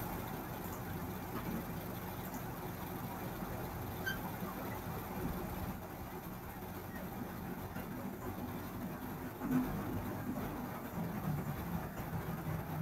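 Steady low background hum and hiss, with no speech, and a brief faint rise a little after nine seconds.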